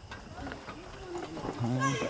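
Faint talk of several people in the background, with a short, low voice sound near the end.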